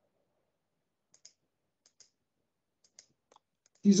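Faint computer mouse clicks, four of them about a second apart, on near silence. A man's voice starts speaking near the end.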